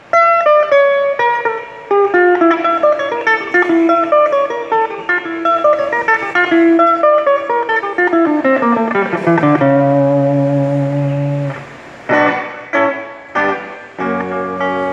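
Solo acoustic-electric guitar played fingerstyle: a picked melody of single notes that runs downward, a held chord, then three short strummed chords near the end.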